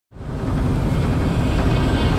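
Intro sound design for an animated logo: a deep, steady rumbling drone that swells up from silence within the first half-second.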